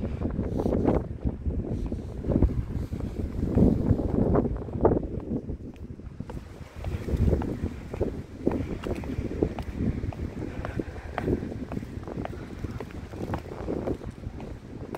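Strong, gusty wind buffeting the microphone: a low, uneven rumble that swells and drops with each gust.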